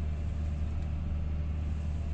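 Komatsu PC200 grapple excavator's diesel engine running steadily, heard from inside the operator's cab: an even low hum with faint steady tones above it.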